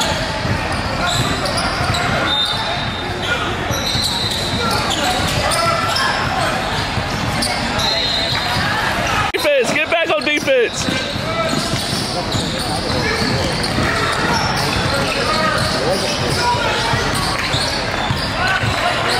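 Basketball game sound echoing in a large gym: crowd and player voices over a basketball being dribbled and sneakers squeaking on the hardwood court. About halfway through, a brief warbling, gliding sound cuts in for about a second.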